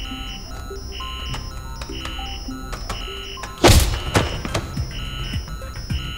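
Tense electronic drama score with a high beeping pulse repeating about once a second, cut through a little past halfway by one loud heavy thud that rings out briefly.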